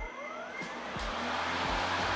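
EGO Select Cut 56-volt brushless electric push mower starting at the push of a button: a whine rises in pitch as the motor and blades spin up over about a second, then settles into steady running noise.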